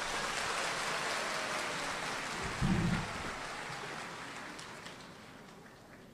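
Audience applause in a hall, dying away gradually until it has faded out near the end, with a brief low sound about halfway through.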